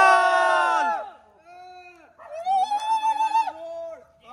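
Men giving long, held shouts: a loud cry at the start that drops in pitch as it ends, and a second, wavering cry a couple of seconds later.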